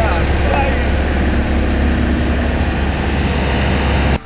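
A steady low engine rumble at idle, unchanging throughout, with faint voices in the first second.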